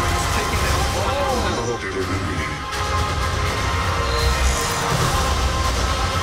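Movie-trailer soundtrack: music with held tones over a deep low rumble, with several viewers' voices mixed in.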